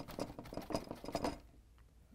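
Large brush loaded with oil paint dabbing and scrubbing on a stretched canvas: a quick run of soft taps and scrapes that lasts about a second and a half and then stops.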